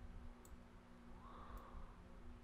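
Two faint computer mouse clicks about a second apart, over a quiet room hum.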